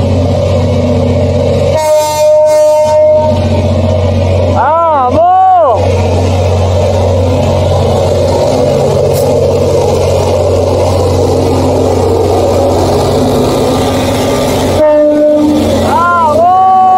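Diesel freight locomotive approaching with a steady engine rumble. Its horn sounds for over a second about two seconds in and again shortly before the end.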